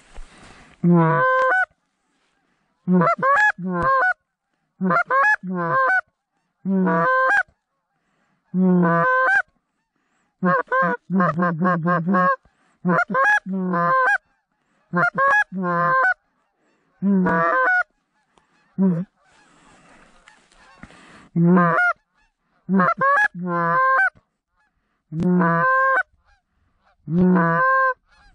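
A hand-blown goose call sounding short honks and clucks, singly, in pairs and in quick runs, with brief silences between, imitating Canada geese to bring in a flock in flight.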